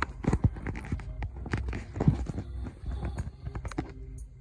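Irregular clicks and knocks of a phone being handled and moved against a hard windowsill, with a steady low rumble underneath.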